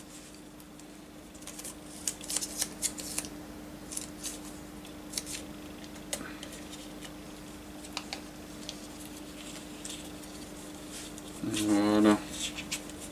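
Masking tape crackling and clicking in scattered small bursts as it is wrapped and pressed by hand onto a plastic model part, over a steady low hum. Near the end comes a brief vocal murmur.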